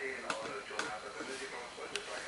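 A pause between a man's spoken sentences: quiet room tone with a few faint short clicks, the last one near the end.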